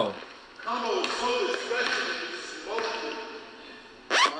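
Men's voices talking, quieter than the loud voice just before.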